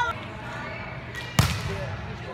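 A single sharp smack of a hand striking a volleyball, about a second and a half in.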